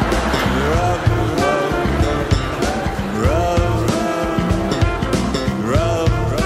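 A funk band recording with drums and bass under a lead line of repeated swooping notes that bend up and then hold.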